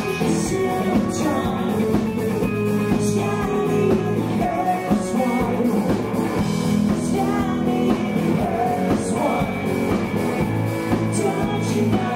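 Live rock band playing: a woman sings lead over electric guitar and a drum kit with regular cymbal crashes.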